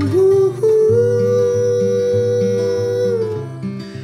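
Acoustic guitar strumming under a long held wordless sung note, an 'ooh', that rises into place about half a second in and is held for nearly three seconds before it falls away.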